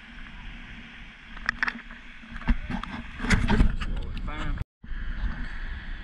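Wind rumbling on the camera microphone, with a few knocks from the camera being handled and a short stretch of voice a little past halfway. The sound drops out completely for a split second about three quarters of the way through.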